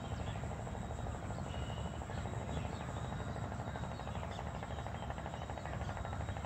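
Outdoor ambience: a fast, steady insect trill over a constant low rumble.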